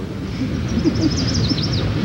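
Outdoor ambience of low wind rumble on the microphone, with a bird giving a quick run of short, high, falling chirps in the second half.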